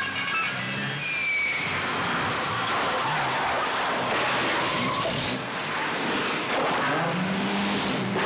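Car tyres screeching and skidding during a multi-car pile-up, a long stretch of squeal that slides down and up in pitch. Music plays beneath it at the start and again near the end.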